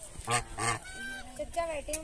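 Domestic geese honking. Two loud, harsh honks come close together near the start, followed by softer calls from the flock.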